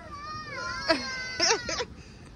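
A person crying: one long high-pitched wail that falls slightly in pitch, then two short sobbing cries.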